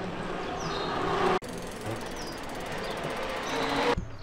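Mountain bikes rolling past on an asphalt street, with tyre noise that grows louder as each rider comes close. The sound cuts off suddenly about a second and a half in, and again at the end.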